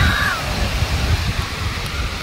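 Wind on the microphone and ocean surf in a steady rush, with a short high call near the start.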